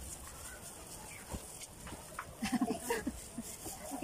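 Hands rubbing and patting plastic wrap over a wet acrylic-painted canvas, a soft crinkling rub, with a short wordless vocal sound from a child about two and a half seconds in.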